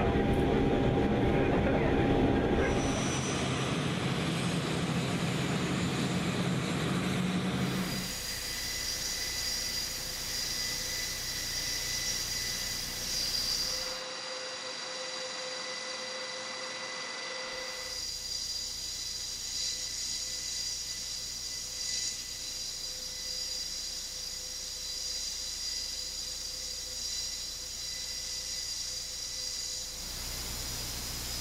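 Airbus A400M Atlas turboprop engines running. First comes a low drone heard inside the cargo hold; then, after a cut about eight seconds in, a steady high whine from the engines and eight-bladed propellers turning on the ground.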